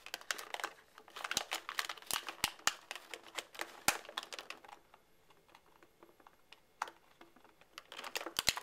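Clear plastic blister packaging crinkling and clicking as hands handle it, a quick irregular run of sharp clicks for the first four or five seconds, then quieter with a single click near the end.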